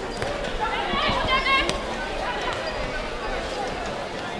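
Beach volleyball being struck by a player's hands: one sharp smack a little before the halfway point, with a high-pitched shout just before it over steady crowd chatter.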